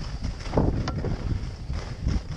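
Wind buffeting the microphone of a camera carried by a moving skier, a steady low rumble, over the hiss of skis sliding on groomed snow.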